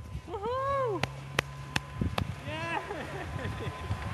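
A person's wordless voice calling out, one drawn-out rising-and-falling sound and then a shorter one, with four sharp clicks between them and a faint steady low hum.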